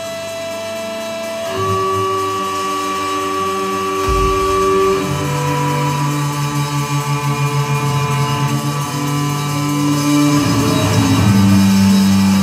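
Instrumental trio of violin, electric guitar and drums playing live: a slow passage of long held notes that change every few seconds, with a low thud about four seconds in and a pulsing swell in the middle.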